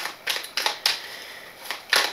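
Tarot cards being handled, snapping and tapping against each other: a run of sharp, irregular clicks, four in the first second and two more near the end.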